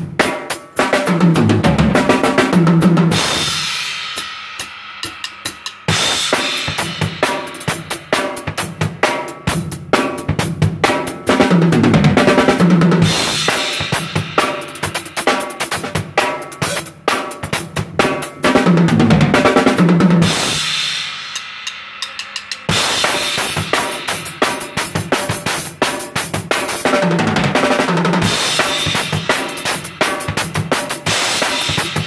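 Acoustic drum kit played as a beat broken by sixteenth-note fills moving around the toms. Twice a fill ends on a crash cymbal that is left ringing for two or three seconds before the beat starts again.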